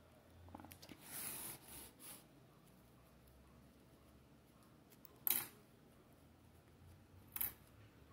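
Grosgrain ribbon rustling faintly as it is hand-stitched, with a needle and clear thread drawn through the gathered bow about a second in. Two short sharp clicks follow, one near the middle and one near the end.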